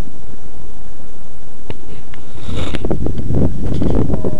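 Wind buffeting a small head-worn camera microphone in a steady rumble, with a few handling clicks and knocks. About two and a half seconds in comes a brief splash as a largemouth bass is let back into the lake.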